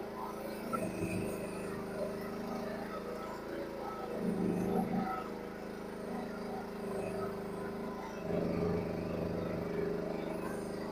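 Mini excavator engine running steadily, with its hydraulics at work as the arm moves through brush. The engine note swells louder twice, about four seconds in and again near the end, as it takes load.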